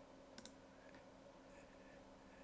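Two quick computer mouse clicks close together about half a second in, over near silence with a faint steady hum.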